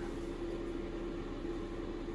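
Steady hum of a ventilation fan: an even rushing noise with one faint steady tone running through it.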